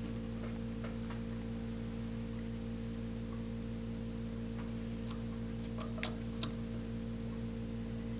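Steady electrical hum, with a few faint clicks about six seconds in from three-pin header pins being pressed into a solderless breadboard.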